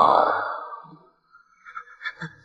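A woman's voice holding a long, drawn-out final syllable of a spoken line, fading out within the first second. Then near silence, with a few faint short sounds near the end.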